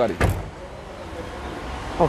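A car door clunks about a quarter second in, followed by a low steady rumble of movement and handling as the person climbs out of the car.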